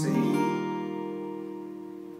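Acoustic guitar, capoed at the third fret, strummed once on a C chord shape; the chord rings on and slowly fades.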